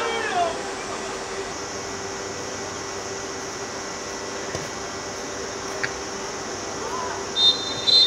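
Players shouting on a football pitch over a steady background hum, then near the end two short, loud referee's whistle blasts.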